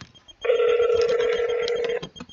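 Ringback tone through a cell phone's speaker: a single steady ring about a second and a half long, starting half a second in and cutting off sharply. It means the line is ringing and the call has not yet been answered.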